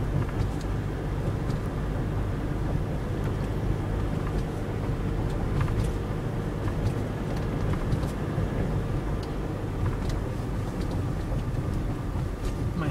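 Steady engine and road noise inside a moving car's cabin, a low, even rumble.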